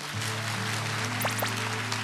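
Audience applauding over soft background music.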